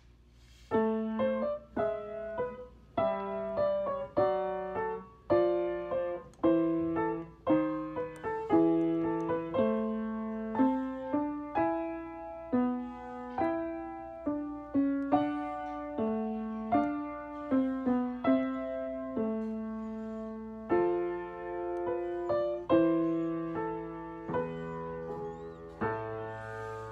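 Solo piano playing on a Yamaha piano: a slow melody over low bass notes, each note struck and left to ring and fade, one or two notes a second.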